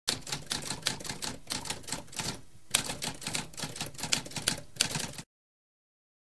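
Typewriter keys clacking rapidly in an irregular stream, with a short break about halfway through, stopping suddenly a little after five seconds.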